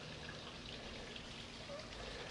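Faint, steady outdoor background hiss with no distinct sound events.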